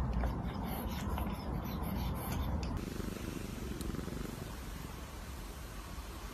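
Domestic cat purring, a low steady rumble.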